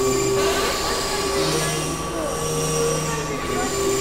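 Experimental synthesizer noise music: a dense hiss and rumble with several held drone tones layered over it, a constant high tone throughout and a lower tone entering about a second and a half in.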